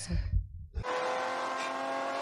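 Race car engine running at a steady high pitch, heard from a film soundtrack. It comes in suddenly about a second in, after a brief silence.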